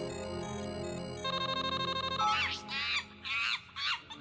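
Tinny electronic music from a web video playing on a computer screen. Held tones give way about a second in to a bright, chiming, ringtone-like figure, then quick high-pitched squeaky chirps through the second half.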